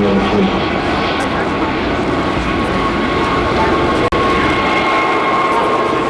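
Engines and rotors of a mixed formation of helicopters and light propeller aircraft flying over: a steady wash of engine noise with a thin, steady whine running through it. The sound cuts out for a moment about four seconds in.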